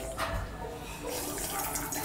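A person slurping and swallowing soup broth straight from a brass bowl held to the mouth.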